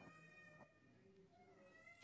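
Near silence: faint room tone, with a few faint steady high tones.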